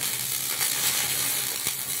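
Electric arc welding: the arc's steady crackling sizzle as the welding runs on without a break.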